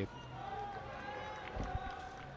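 Faint open-air ambience of a cricket ground picked up by the field microphones, with a faint held call from a distant voice in the first second or so.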